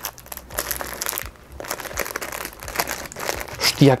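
Thin clear plastic bag crinkling and rustling in the hands as it is pulled open, a run of irregular crackles.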